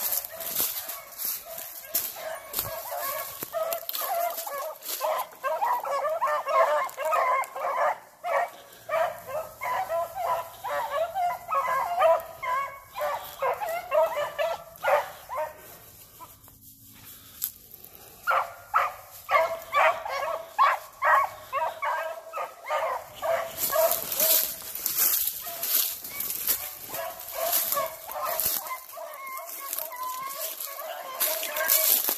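Dog barking over and over in quick bursts, with a short pause about halfway through. Near the end, dry leaf litter and brush rustle loudly under the barking.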